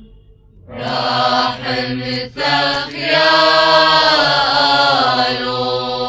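Eastern Orthodox liturgical chant sung in Maaloula Aramaic. About a second in, after a short pause, voices chant a long phrase of held, gently ornamented notes over a steady low note.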